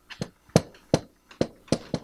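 Marker writing on a whiteboard: an irregular run of short, sharp taps as the pen tip strikes the board with each stroke of the characters.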